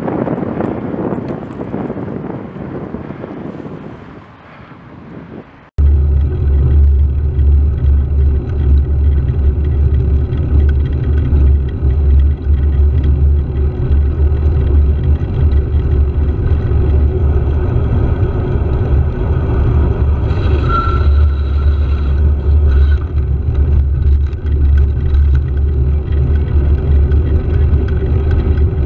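Riding noise from a handlebar-mounted camera: a rush of wind and road noise fades away over the first few seconds. After an abrupt cut about six seconds in, a loud, steady low rumble of wind buffeting the microphone and the vehicle under way takes over.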